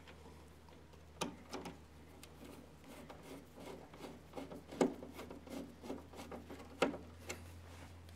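Faint handling sounds of hands reconnecting wiring on an RV furnace's switch terminals: scattered small clicks and rubbing of wires and connectors, with a low steady hum underneath.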